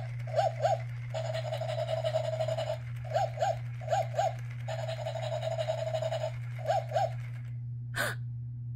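Battery-powered plush Dalmatian toy puppy playing its electronic dog sounds: four pairs of short yaps alternating with two long whines of about a second and a half each, stopping about a second before the end.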